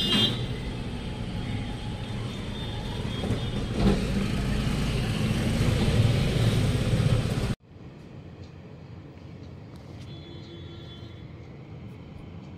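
Road traffic noise, loud and heavy in the low end, that cuts off suddenly about two-thirds of the way through, leaving a much quieter room tone.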